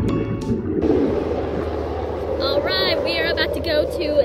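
Background music cuts off within the first second. It gives way to outdoor beach ambience: a steady rumble of wind on the microphone, with a run of high, quick, bird-like chirps from about two and a half seconds in.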